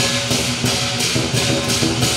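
Lion dance percussion playing: a big drum beating steadily under cymbals clashing about twice a second.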